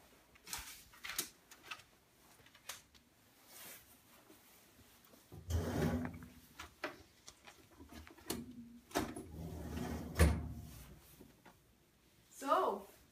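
Bedroom furniture being searched: drawers sliding open and shut, with scattered knocks and rubbing. The handling comes in two longer spells in the second half, with one sharp knock about ten seconds in.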